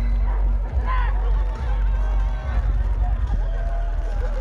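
Loud live electronic dance music over a festival sound system, dominated by a heavy, constant bass. Voices in the crowd shout and whoop over it, once about a second in and again near the end.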